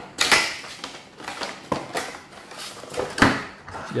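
Small white cardboard box being opened by hand and its contents handled: a run of scrapes, rustles and clicks, the loudest just after the start and again about three seconds in.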